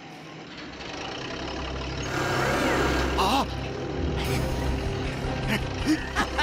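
Heavy truck engine rumbling, coming in about a second in and growing louder. A short wavering cry-like sound rises over it midway.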